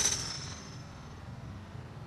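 A golf driver's high, thin ring fading away over about a second, just after the clubhead has struck the ball, over a low steady background rumble.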